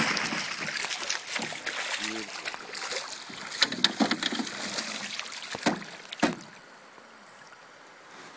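Water splashing and sloshing as a steelhead is scooped into a landing net, with a few sharp knocks in the middle; it goes much quieter a little after six seconds in.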